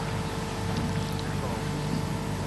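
Room tone in a hall: a steady electrical hum under faint, indistinct voices murmuring in the background.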